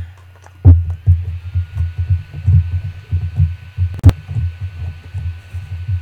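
Repeated irregular low thumps and bumps from a paint jar being handled and wiped against the tabletop as its rim is cleaned, with a single sharp click about four seconds in.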